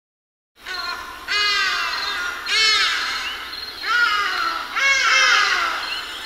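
A large bird calling loudly: four drawn-out, nasal calls that each rise and fall in pitch, starting about a second in.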